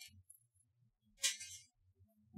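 Faint handling noise from a plastic model kit: a soft click at the start, then one short plastic rustle about a second in as the figure is moved by hand.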